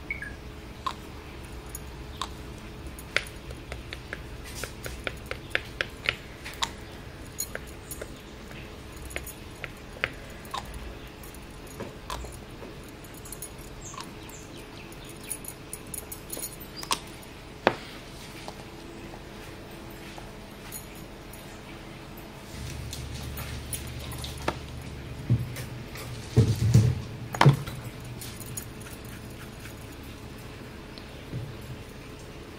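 Scattered light clicks and taps from handling glass ink bottles and a dropper over a work surface, with metal bangles clinking on the wrist. A few louder knocks come near the end.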